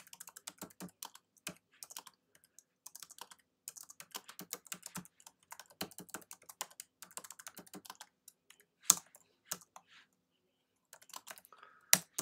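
Typing on a computer keyboard: quick, irregular runs of keystrokes with short pauses between them, one louder key strike about nine seconds in, and a pause of about a second near the end.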